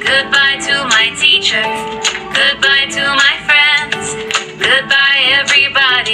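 A children's goodbye song: a sung vocal over instrumental backing music.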